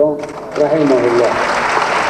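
Audience applauding, the clapping starting about half a second in and growing louder, over the last words of a man's speech.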